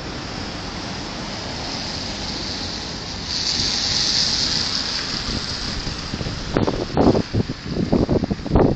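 Steady street noise of traffic and wind on a body-worn camera's microphone, with a louder hiss for a second or two in the middle. Near the end come several dull bumps and rubs against the microphone from the gloved hand and cardboard placard held right at the lens.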